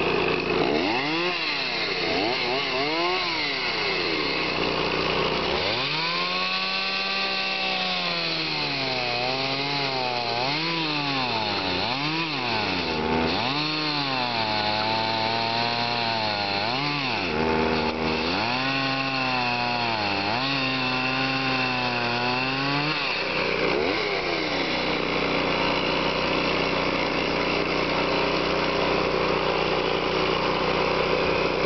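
Stihl 024 Wood Boss two-stroke chainsaw revved twice, then held at high revs cutting through a log, its pitch dipping and recovering again and again as the chain bites into the wood. Near the end it drops back to a steady idle.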